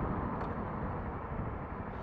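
Wind rush and road noise on a moving motorcycle's action-camera microphone, a steady low rushing that eases off slightly as the bike slows behind traffic.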